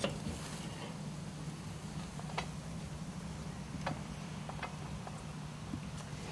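Steady low hum with a few sharp clicks scattered through it, four in all, the first about two and a half seconds in.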